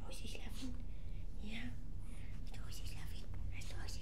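A woman whispering softly to a dog, in short breathy phrases over a steady low hum.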